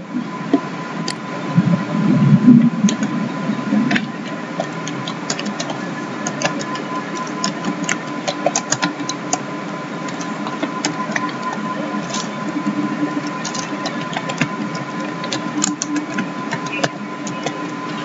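Computer keyboard typing: quick, irregular key clicks over a steady electrical hum.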